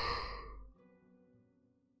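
A man yawning behind his hand: one breathy exhale lasting under a second, fading out.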